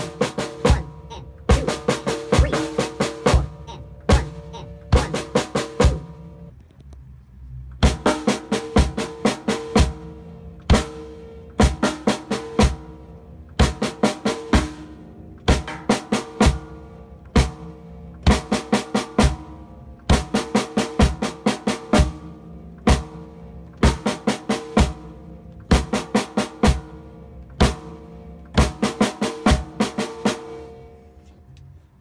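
Dixon drum kit played with sticks: fast clusters of snare and tom strokes over bass drum hits, the toms ringing between strokes, with a sparser break about six seconds in before the playing picks up again.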